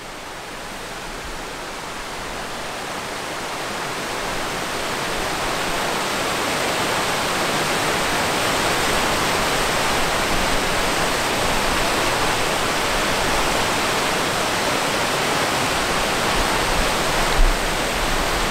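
Glacial meltwater stream rushing over rocks, a steady hiss that grows louder over the first several seconds and then holds. A brief low thump comes near the end.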